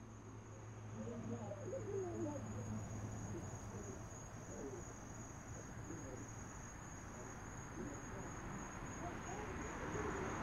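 Crickets chirping in a continuous high trill. Faint wavering lower sounds sit beneath it in the first half.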